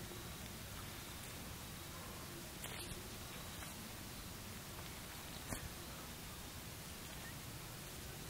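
Quiet, steady background hiss with faint rustling and two light clicks from a dead dove's skin and feathers being pulled off its breast by hand.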